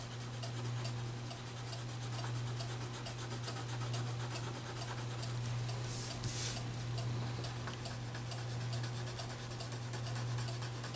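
Wax crayon scribbling on paper in quick, continuous back-and-forth strokes, with a brief louder rustle of the paper sheet being shifted about six seconds in. A steady low hum runs underneath.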